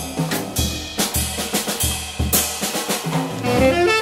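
Live acoustic jazz combo playing, with the drum kit's snare, bass drum and cymbal strikes to the fore over upright bass and piano. A tenor saxophone line comes in rising near the end.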